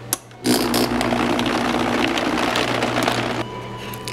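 Vitamix blender switched on with a click, its motor running steadily for about three seconds as it blends cashews, coconut oil and water, then dropping off shortly before the end.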